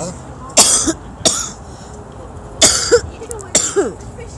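A woman coughing: four sudden coughs in a little over three seconds, the first and third the loudest.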